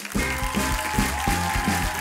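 A short music sting with a heavy, rhythmic bass line, marking the start of a quick-fire question segment, over studio audience applause.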